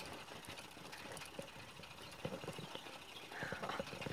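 Quiet, irregular clicking and rattling of a four-seat pedal rental bike rolling along, with a short squeak near the end.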